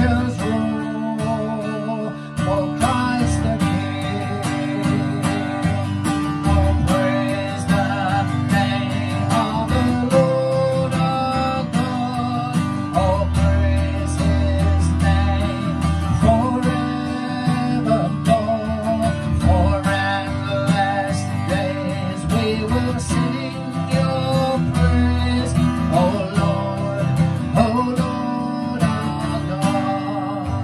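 A man singing a worship song while strumming an acoustic guitar, with steady chords under his sung melody.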